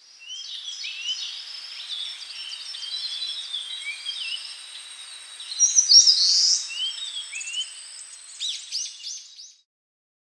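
Small songbirds chirping and singing together, many short high calls overlapping, loudest about six seconds in, then stopping just before the end.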